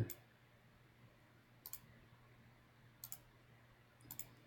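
Two computer mouse clicks, about a second and a half apart, over near silence with a faint low hum.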